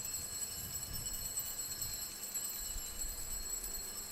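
Altar bells rung continuously at the elevation of the consecrated host, giving a steady high-pitched ringing. The ringing marks the moment the host is shown to the congregation after the consecration.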